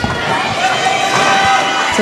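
Spectators in a sports hall cheering and shouting, a steady din of crowd voices.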